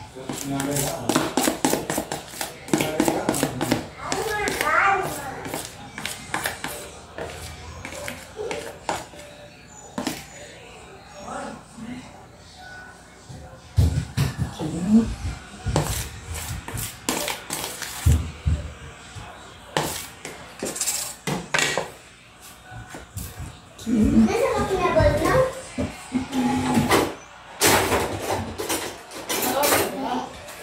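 Voices talking in the background, with many short clicks and scrapes of a spatula against a plastic mixing bowl as cake batter is scraped into an aluminium tube pan.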